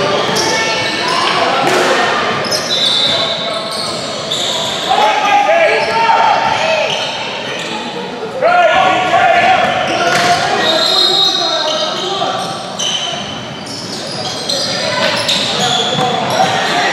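Youth basketball game in an echoing gym: shouted calls from players, coaches and spectators, loudest about halfway through, over the ball bouncing on the hardwood and a few brief high squeaks from sneakers on the court.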